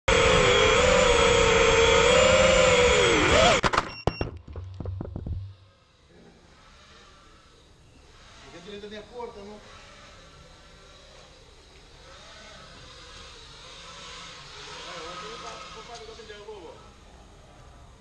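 FPV quadcopter's brushless motors and propellers whining loudly, their pitch wavering, then falling away after about three and a half seconds, followed by a clatter of sharp knocks as the quad comes down. After that it is much quieter, with faint distant voices.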